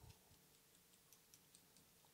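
Near silence with faint, rapid ticking: tying thread being wrapped around a fly hook's shank in a vise.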